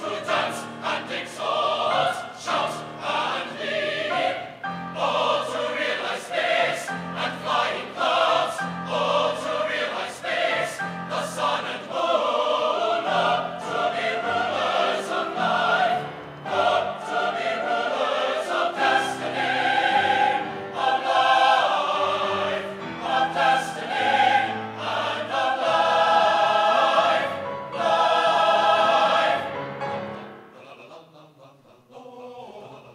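A large mixed choir of men and women singing in full sustained chords. The last chord is released at the very end and the sound dies away.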